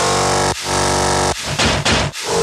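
Heavy dubstep track: thick distorted synth bass notes in chopped blocks, broken by short gaps, with a brief noisy burst near the end.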